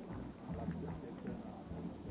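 A Volkswagen Golf hatchback driving slowly past close by, a low engine and tyre rumble, with faint voices of onlookers.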